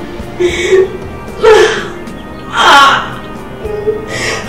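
Soundtrack music with a woman crying out three times in short, breathy, gasping outbursts.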